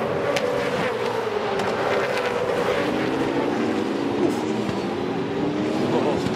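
A pack of V8 Supercars touring cars racing by, their V8 engines running hard. One engine note drops in pitch over the first couple of seconds, then several engine notes climb together from about halfway as the cars accelerate.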